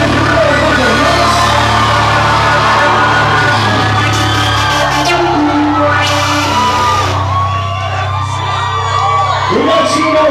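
Live rock band's song ringing out on sustained notes, with a club crowd cheering, whooping and shouting over it, the cheering growing in the second half.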